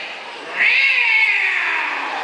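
A single high, drawn-out meow-like call starting about half a second in and lasting a little over a second, its pitch rising slightly and then falling away.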